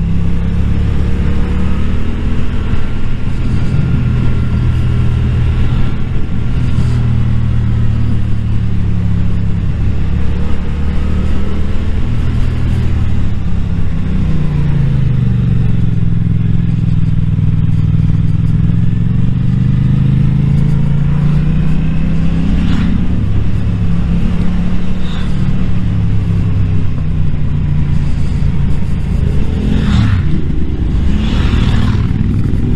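Yamaha MT-series motorcycle engine running under way. Its pitch falls as the bike slows about halfway through and rises again as it pulls away.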